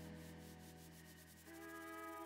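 Background music trailing off to near silence at the end of a track, with a faint new chord entering about a second and a half in.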